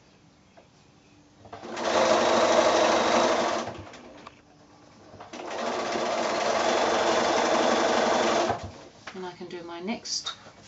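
Bernina sewing machine stitching in two runs, about two seconds and then about three seconds long, stopping in between as the patchwork is guided under the foot.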